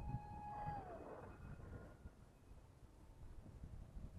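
Faint whine of a distant RC Sukhoi SU-35 parkjet's electric motor and propeller in flight, a steady tone that drops in pitch about a second in and fades away, over a low rumble.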